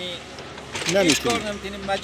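A man speaking, after a short pause at the start.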